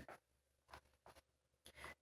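Near silence: small-room tone with a few faint, brief rustles.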